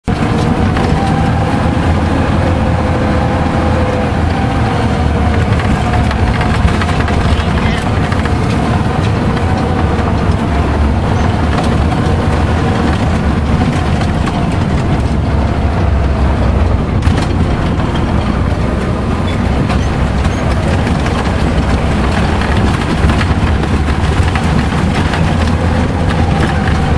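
Tour vehicle's engine running and its tyres rumbling over a bumpy dirt road, heard from inside the vehicle: a steady, heavy rumble whose engine note drifts slightly up and down.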